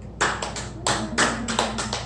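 A small audience of a few people applauding, with scattered, uneven hand claps starting just after the music stops.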